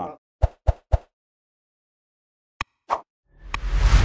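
Sound effects of an animated like-and-subscribe end screen. Three quick pops come about half a second to a second in, then a click and a pop near three seconds, and a swelling whoosh near the end.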